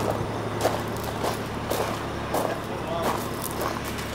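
Concrete pump truck's engine running steadily, with indistinct voices over it.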